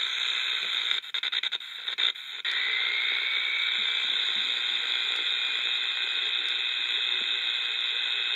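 Shortwave static from an Eton Elite Mini pocket radio's small speaker, tuned near 11.67 MHz: a steady hiss with only a weak signal in it. The hiss breaks up on and off in the first couple of seconds while the frequency is stepped, then runs steady, with a faint rising whistle a few seconds in.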